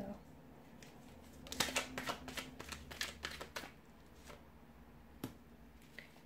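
Deck of tarot cards shuffled by hand: a quick run of card flicks and slaps lasting about two seconds, followed by a single sharp tap near the end, as cards come out of the deck.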